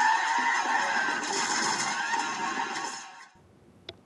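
Action-film soundtrack: dense music and effects with a few high, gliding cries in it, fading out about three seconds in.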